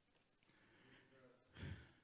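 Near silence, then a man's short audible breath into a handheld microphone near the end, drawn before he speaks again.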